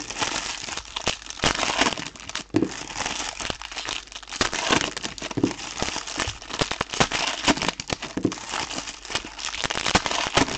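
Foil trading-card pack wrappers crinkling and being torn open by hand, one pack after another, in irregular bursts of crackle.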